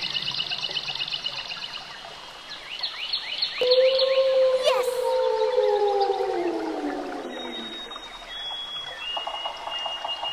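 A single long wolf howl, starting about three and a half seconds in and sliding slowly down in pitch over about four seconds. It comes over fast, high-pitched chirping.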